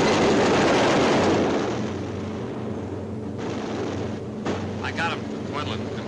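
A loud, dense rush of noise for about the first second and a half, then the steady drone of the B-17's four radial engines. A crewman's voice on the intercom comes in near the end.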